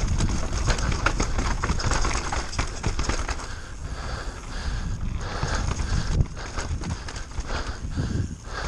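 Giant Reign mountain bike descending a wet, rough dirt trail: tyres rolling and skittering over dirt, roots and rocks, with a continuous run of quick rattles and knocks from the bike over a low rumble.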